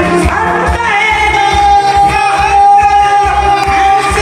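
Live Korean trot song: vocals over a backing band with a steady beat, and a long note held from about a second in.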